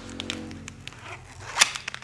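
Plastic tint film crinkling and snapping as it is handled: scattered sharp crackles, with one louder snap about one and a half seconds in. Faint steady background music runs underneath.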